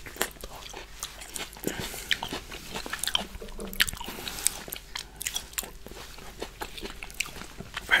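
Close-miked chewing of rambutan fruit flesh: irregular wet mouth clicks and soft squelches as the fruit is bitten and chewed.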